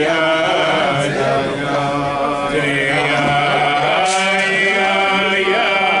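A group of men singing a slow wordless Hasidic niggun, with long held notes that bend from one pitch to the next.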